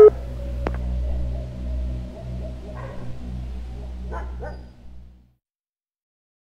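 A steady low hum with a single click about a second in and two short dog barks, around three and four and a half seconds in, before all sound cuts off suddenly about five seconds in.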